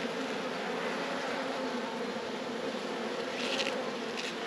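Honeybees buzzing around an open hive, the massed wingbeats of many bees making one steady hum.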